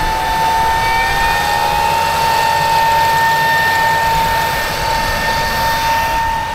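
Air seeder rig working through the field: a steady high-pitched whine, typical of an air cart's fan, over the rumble of the machine, with a second tone gliding up to join it about a second in.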